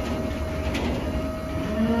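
Livestock truck's engine running with a steady low hum and a held whining tone; about a second and a half in, a Limousin calf in the truck begins a long moo.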